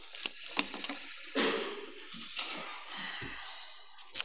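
Thin Bible pages rustling as they are leafed through, with a few light clicks and a dull knock on a wooden lectern.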